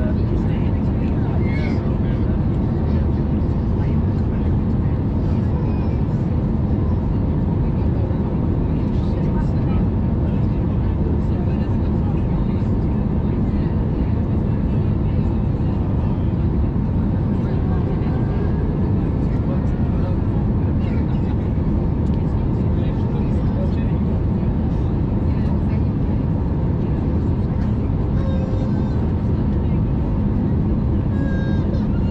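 Steady cabin noise inside an Airbus A320neo in flight: an unbroken drone of airflow and CFM LEAP-1A engine noise, deepest in the low end, with a faint steady tone on top.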